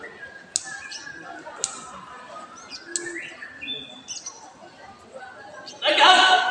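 Indistinct background voices, with three sharp clicks about a second apart and a few short, high chirp-like tones.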